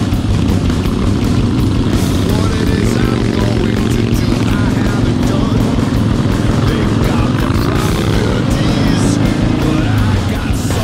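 Rock music with singing, mixed with Harley-Davidson Ironhead Sportster V-twin engines running on the move; an engine's pitch rises near the end as it accelerates.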